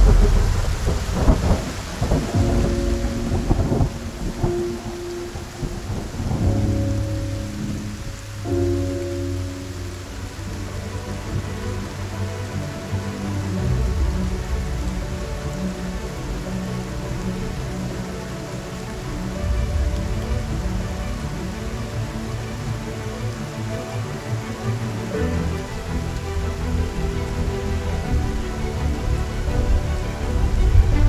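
Steady rain with low rumbles of thunder that swell and fade, under soft background music holding long notes.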